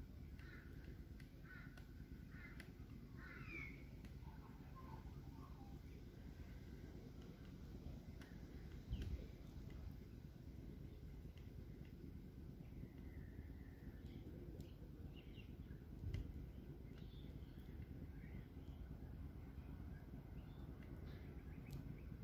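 Faint bird calls over a quiet, low background rumble, with a soft knock about nine seconds in and another about sixteen seconds in.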